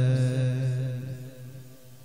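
A man's voice chanting a Shia lament (na'i), holding one long steady note that fades away over about the first second.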